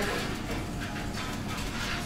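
Metal shichimi spice tin shaken over a bowl of soba: a couple of soft, hissy shakes over a steady low background hum.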